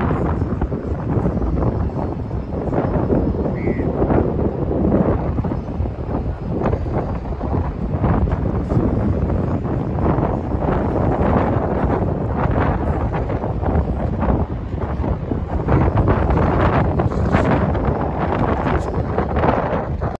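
Wind buffeting the microphone: a loud, continuous rushing noise that swells and dips in gusts.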